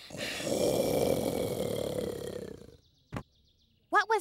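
A cartoon roar sound effect: a long, rough growling roar that fades out after nearly three seconds, the "horrifying noise" taken for a monster in the bushes. A short click follows.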